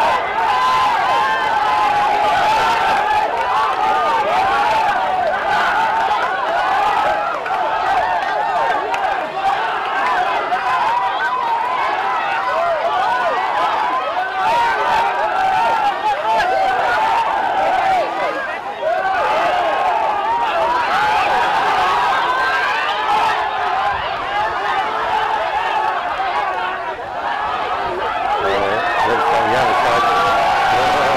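A large crowd, many voices calling out at once and overlapping, loud and continuous.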